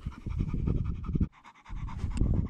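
Low, rough rumbling noise right on the microphone, in two spells with a short break a little past the middle.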